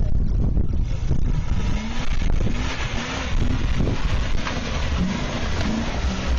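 A classic Range Rover's engine running as it crawls down a steep grassy slope, with wind rumbling on the microphone.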